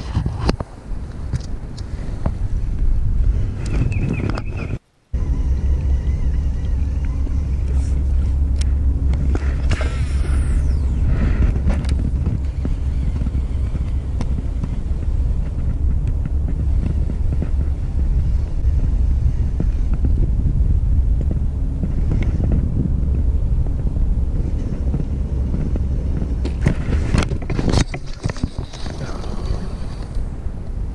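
A steady low rumble that cuts out for a moment about five seconds in and then runs on, with a few light clicks and rustles over it.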